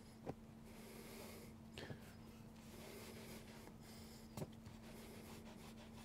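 Faint rubbing of a microfiber cloth wiped over a white vegan-leather car seat, near the edge of silence, with a few soft clicks and a low steady hum underneath.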